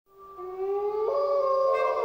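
Sustained bowed-string notes swelling in from silence at the start of a song, sliding and stepping between pitches.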